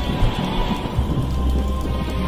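Soundtrack music with long, low bass notes over a steady hiss.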